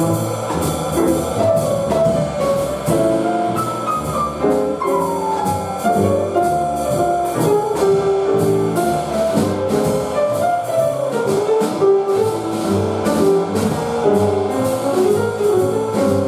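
Small jazz group playing live: acoustic piano, upright bass and drum kit with steady cymbal ride, and a trumpet.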